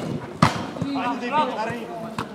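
A football kicked hard: a sharp thud of the strike right at the start, then a second thud about half a second later as the ball hits something. Men shout briefly afterwards.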